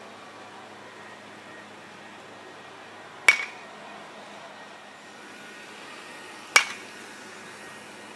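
A baseball bat, most likely a metal bat, hitting pitched balls twice, about three seconds apart: two sharp, ringing pings during batting practice.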